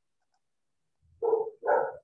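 A dog barking twice in quick succession, short sharp barks about half a second apart.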